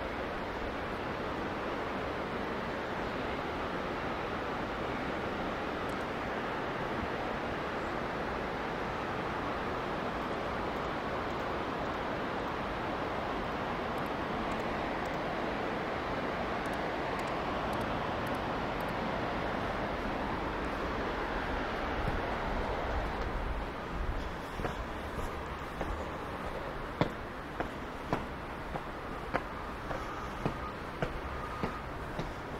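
A steady outdoor rush of distant city traffic and river, with some wind buffeting the microphone. It eases off near the end, and footsteps land on stone steps about once a second.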